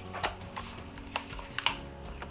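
Thin clear plastic chocolate-mould pieces clicking and crackling as they are pried off a set chocolate heart: a few sharp, irregular clicks over a faint steady hum.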